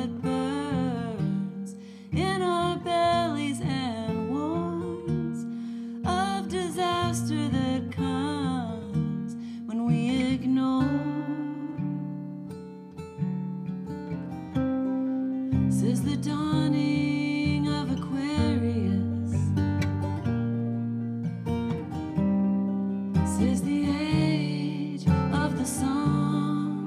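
Live folk song: a woman singing over her own steel-string acoustic guitar, with stretches of guitar alone between the sung phrases.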